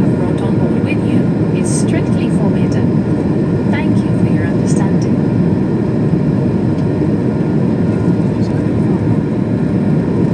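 Steady cabin noise inside an Airbus A220-300 in flight: the constant drone of its Pratt & Whitney PW1500G geared turbofan engines and airflow, heard from a window seat over the wing.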